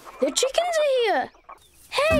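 Cartoon chickens clucking: a few short clucks, then one longer squawk that falls in pitch, about a second in.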